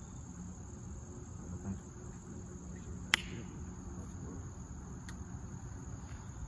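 Insects chirring steadily in a high, even tone. A single sharp click about halfway through, and a fainter one near the end.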